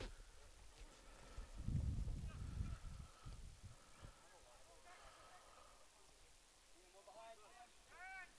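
Quiet outdoor sports-field ambience: a low rumble from about one and a half to three seconds in, and faint distant calls later on.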